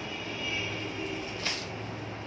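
Steady drone of an evaporative air cooler's fan, with a faint high whine over the first second and a half. A single sharp crackle about one and a half seconds in as the plastic wrapping around the plant's root ball is handled.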